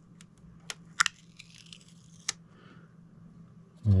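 Several sharp plastic clicks and a brief scraping rustle as hands pull a small protective cap off a computer power supply's mains inlet.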